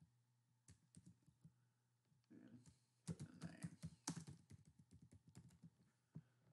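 Faint computer keyboard typing: a few scattered keystrokes, then a quick run of keys starting about three seconds in and lasting some two seconds.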